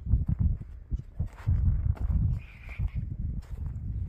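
Footsteps on grass and dirt: a run of irregular low thuds.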